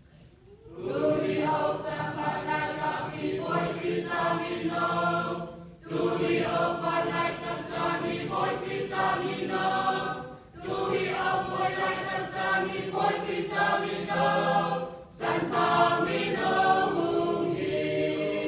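Mixed church choir of men's and women's voices singing a hymn, in four phrases separated by brief pauses.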